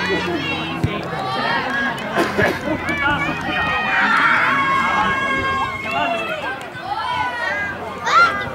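Many young children's high-pitched voices chattering and calling out over one another.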